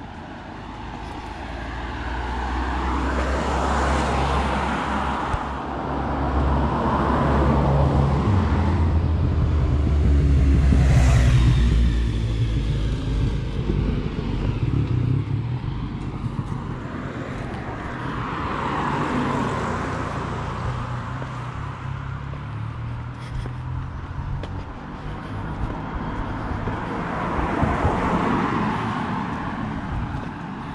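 Cars passing on a road one after another, each swelling and fading over a few seconds, the loudest pass about eleven seconds in.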